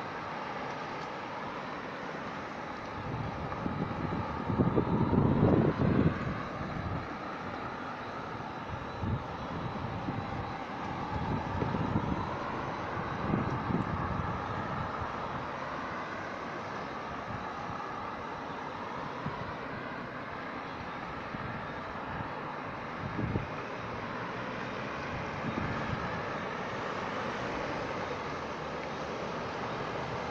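Road traffic: cars driving around a roundabout on a wet road, engines and tyres, with a louder low rumble about five seconds in.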